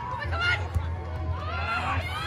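High-pitched voices calling out and shouting during a beach volleyball rally, over a background of crowd chatter.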